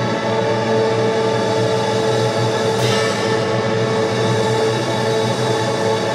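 Live choir and symphony orchestra playing a slow passage of long held chords.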